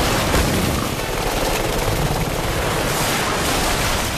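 Cartoon fight sound effects: a loud, continuous rushing blast with a dense crackle. It eases off right at the end, as a water jet strikes its target.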